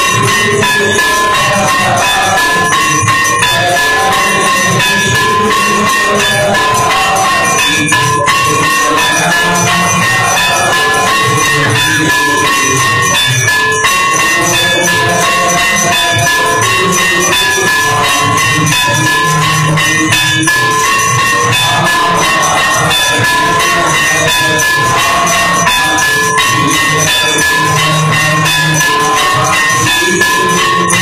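Temple aarti music: bells ringing continuously over fast, unbroken cymbal and drum percussion.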